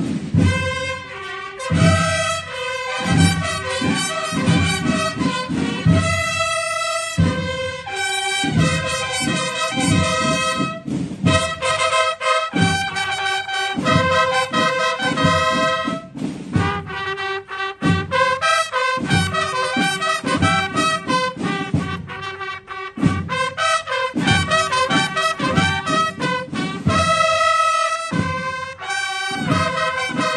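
Processional brass band playing a march: several horns sound the melody in harmony over a steady beat.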